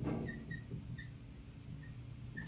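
Dry-erase marker writing on a whiteboard: soft scratchy strokes with several short, high squeaks.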